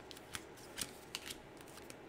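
Faint handling of tarot cards: a few light, irregular clicks and soft rustling.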